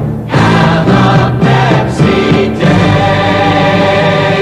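Choir and orchestra performing the end of a 1970s Pepsi advertising jingle, a few short sung phrases and then a long held final chord.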